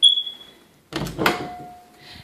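A pair of hinged closet doors being opened by their knobs. There is a sharp click with a short ring at the start, then a louder rustling knock as the doors swing open about a second in.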